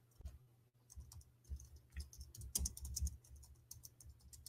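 Faint computer keyboard typing and clicking: irregular keystrokes, bunching into a quick run about two and a half seconds in, over a low steady hum.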